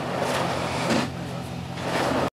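A vehicle engine running: a steady low hum under a rushing noise.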